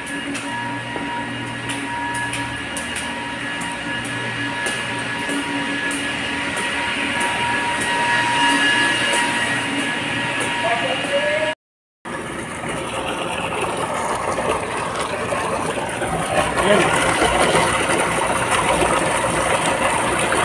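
Steady hum and whine of water-treatment pumps and motors. After a cut about twelve seconds in, water gushes out of a large PVC pipe into a concrete basin, growing louder: the discharge of a filter being backwashed.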